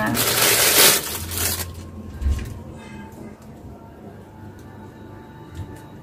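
Clear plastic bag crinkling loudly as a charger is pulled out of it, for about the first second and a half. Then quieter handling of the charger and its cable, with a few small clicks.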